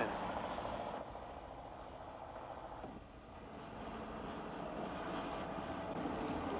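Chevrolet Suburban driving along a paved road: a steady engine and tyre noise that dies down over the first few seconds, then swells again.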